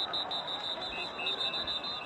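Referees' whistles blowing the play dead over a pile-up after a fumble: a high, warbling whistle throughout, joined about a second in by a second, lower-pitched whistle.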